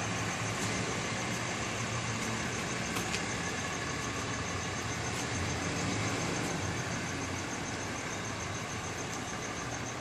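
Tow truck's engine running at a low, steady hum as the truck moves off across the lot.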